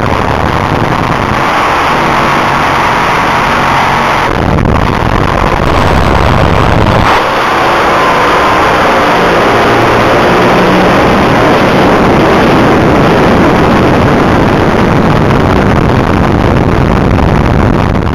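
Loud, steady noise of a Top Fuel dragster heard from its cockpit camera: the engine and rushing air, with brief shifts in tone about four and seven seconds in.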